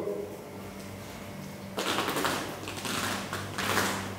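A man biting into and chewing food close to the microphone: a few short crackly crunching sounds starting about two seconds in, over a low steady hum.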